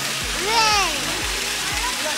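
Water splashing and running in a penguin pool, over a background music track.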